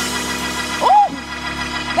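Church organ holding a sustained chord with a low bass underneath, the backing played under a preacher's exhortation. A single short vocal cry rises and falls about a second in.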